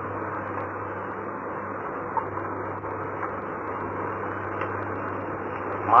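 Steady hiss with a constant low hum: the background noise of an old tape recording of a room, with no speech.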